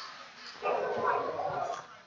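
A faint voice, off the microphone, calling out for about a second starting half a second in.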